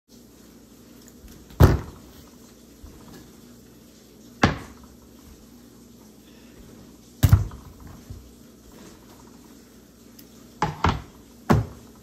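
Full plastic water bottles and a bowl being set down one at a time on a kitchen countertop: about six separate knocks a few seconds apart, the last three close together near the end.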